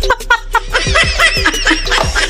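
A person snickering, a run of quick short bursts of laughter, over background music with a steady beat.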